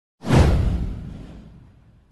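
A whoosh sound effect with a deep boom underneath, for an animated logo intro. It starts suddenly a moment in, sweeps downward in pitch and dies away over about a second and a half.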